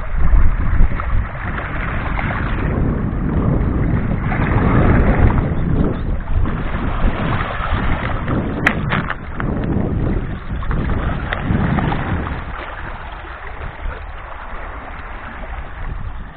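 Wind rumbling on the microphone over small sea waves washing against stones and pebbles at the water's edge, swelling and falling every couple of seconds. One sharp click about nine seconds in.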